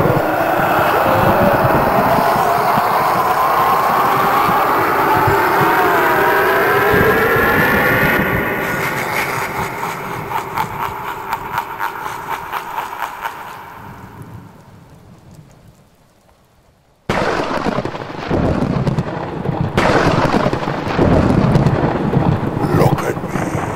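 The Harvester of Souls animatronic's built-in sound effect: a loud, eerie rumble with tones gliding up and down as it draws out its victim's soul, fading away with a crackle over several seconds. After a short hush, a thunder-like rumble starts abruptly.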